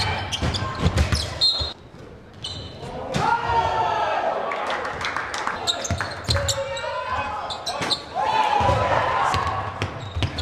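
A basketball bouncing on a hardwood gym floor during play, in sharp repeated thuds, with shouting voices over it.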